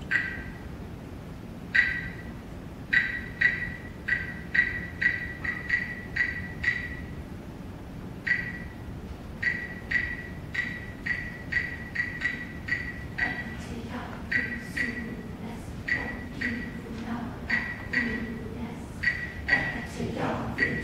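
Wood block struck in an uneven, lopsided rhythm of sharp hollow clicks, like a ticking clock, counting out a seven-eight meter for a choir. A softer, lower sound joins in the second half.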